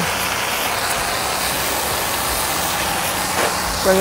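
Hot-water pressure washer spraying a rinse stream onto concrete: a steady, even hiss of water with the washer's engine running underneath. A voice cuts in at the very end.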